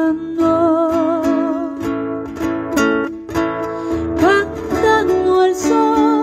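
A woman singing live over a strummed acoustic guitar, holding one long note with vibrato about half a second in, then going on over the chords.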